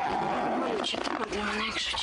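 A woman crying, with wavering, sobbing vocal sounds rather than words.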